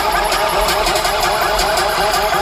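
Loud electronic dance music from a festival sound system, a dubstep set with a gritty synth figure that wobbles up and down several times a second over a steady low bass.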